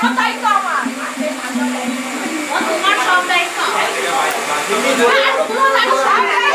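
Several voices sounding at once in a room, with a steady low tone held through the first couple of seconds.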